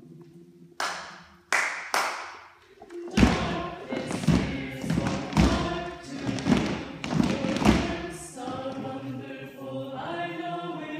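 Three sharp knocks, then about five seconds of heavy, evenly spaced thumps, roughly two a second, under voices. Near the end a group of voices sings together.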